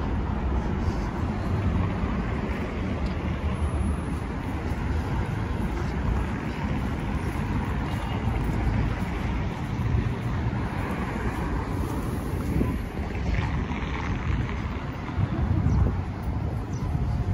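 City street ambience: a steady hum of road traffic, with wind buffeting the microphone in an uneven low rumble.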